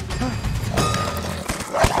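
Animated-film fight-scene soundtrack: score music under a string of sharp hits, with a short shout near the end.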